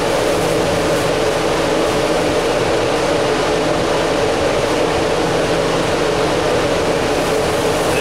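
Steady drone of a ventilation fan, a constant rushing air noise with a low hum, unbroken throughout.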